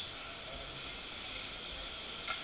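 A pause with only faint, steady room noise and microphone hiss; no distinct sound stands out.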